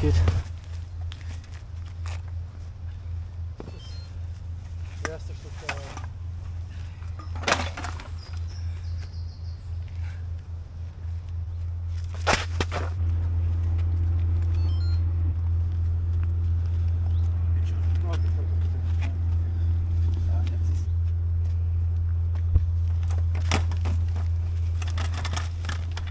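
Luggage being hauled up a steep, muddy dirt slope: scattered knocks and scuffs from a loaded hand cart and footsteps, over a steady low outdoor rumble that grows louder about halfway through.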